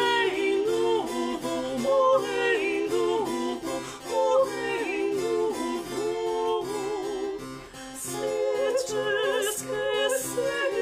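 Soprano and mezzo-soprano singing a late-18th-century Brazilian modinha in duet, with vibrato, accompanied by spinet and classical guitar. The voices dip briefly just before the last two seconds, then come back in.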